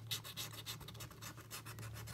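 Golden Ticket scratch-off lottery ticket being scratched with a thin tool: quick, rapid scraping strokes, several a second, over the ticket's coating.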